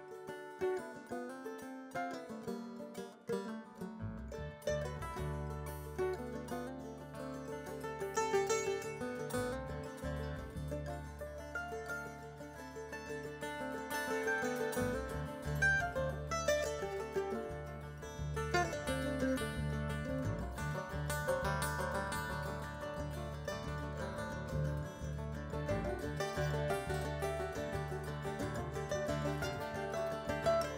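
Acoustic string band playing an instrumental passage on mandolin, banjo, acoustic guitar and upright bass. The low bass notes come in about four seconds in.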